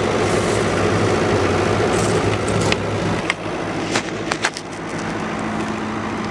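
Kubota KX71-3 mini excavator's diesel engine idling steadily, with a few sharp crunches of footsteps on gravel in the second half.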